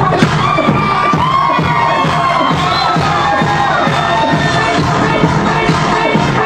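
Loud electronic dance remix playing over the club sound system with a steady thumping beat, while the crowd cheers.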